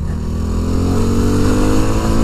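Yamaha WR250R's single-cylinder engine pulling under steady acceleration, its pitch rising gradually over a rush of wind noise.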